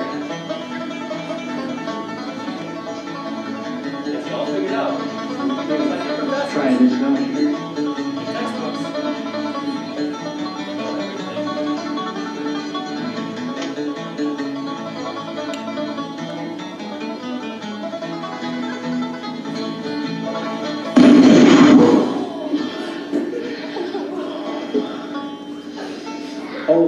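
Banjo music plays throughout. Near the end, a homemade foil-wrapped sparkler goes off in a sudden loud blast lasting about a second; its maker blames too much magnesium in the mix.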